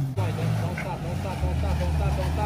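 Toyota Tacoma pickup's engine running low and steady as it crawls over rocks at walking pace, settling to a lower note a little over halfway through.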